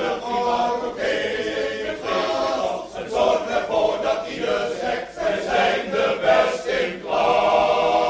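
Choir singing a song in Dutch in short phrases, then holding one long final chord from about seven seconds in.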